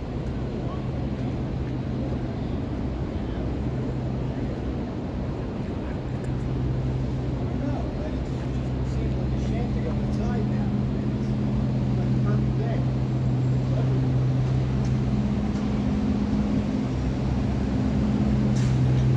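Downtown street ambience: a steady low hum that grows louder from about six seconds in, with faint voices of passers-by.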